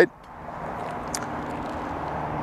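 Steady outdoor background rush with a faint low hum, like distant traffic, and one light tick about a second in.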